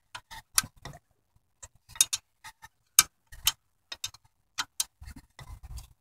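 Steel combination wrench clicking against the 13 mm fan bolts as it is worked around and refitted on them by hand: short, sharp metal ticks, two to four a second, at an uneven pace.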